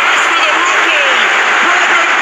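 Rugby league stadium crowd cheering, a dense, steady wash of many voices.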